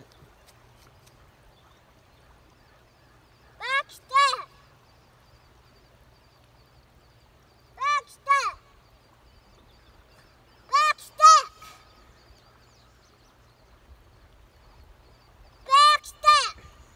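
A goose honking in pairs of short, rising-and-falling honks about half a second apart, the pairs repeating every three to four seconds.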